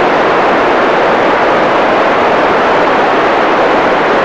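Steady, loud hiss of an FM radio receiver with its squelch open, picking up no signal in the gap between the space station's voice transmissions.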